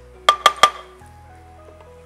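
Three quick ringing clinks in the first second as a wooden spatula is tapped against a stainless steel cooking pan, over soft background music.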